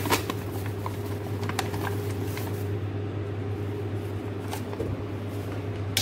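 Flour poured from a paper bag into a stainless steel bowl, with a few soft rustles and clicks as the bag is handled, over a steady low electrical hum.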